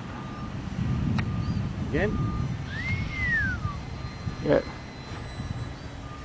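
Electric motor and propeller of a foam RC Spitfire model flying overhead, a steady distant drone that grows louder about a second in. A short whistle-like note rises and falls near the middle.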